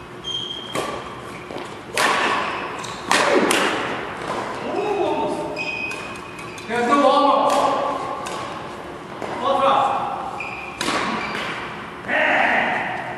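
Badminton racket strikes on a shuttlecock: sharp smacks that ring on in a large hall, three in quick succession in the first few seconds and one more near the end.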